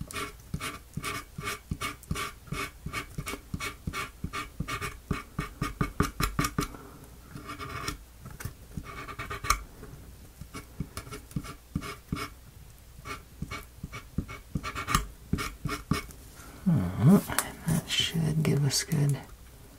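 Quick, regular scratchy strokes of a colouring tool rubbed back and forth on a small wooden model door, about three to four strokes a second, in runs with short pauses.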